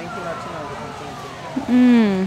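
Store background hum with a faint distant voice, then a woman's voice near the end giving one drawn-out, steady-pitched exclamation.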